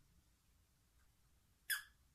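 Near silence: quiet room tone, broken by one short hissing sound near the end.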